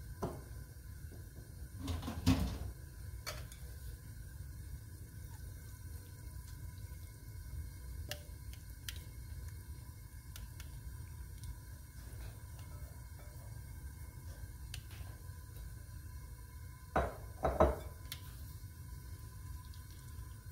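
A glass mixing bowl and silicone spatula knock and scrape against a nonstick frying pan as a thick zucchini batter is emptied into it. There are a few knocks about two seconds in and a cluster near the end, with small clicks between them, over a steady low hum.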